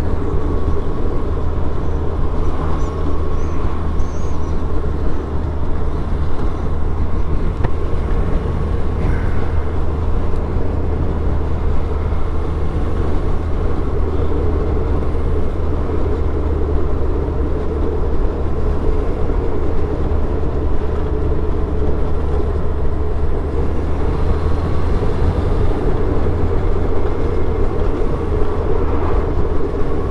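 1999 Suzuki Hayabusa's inline-four engine running at a steady cruise, heard through a helmet-mounted camera mic along with wind rush. The level stays even, with no clear revving or gear changes.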